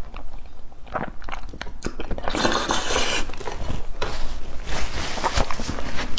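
Close-miked mouth sounds of a man biting and chewing braised pork knuckle: a string of wet clicks and smacks, with one denser, louder stretch of about a second starting a little over two seconds in.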